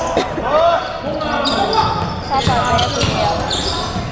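Indoor basketball play on a hardwood gym floor: sneakers squeaking in short sharp glides and the ball bouncing, echoing around the large hall.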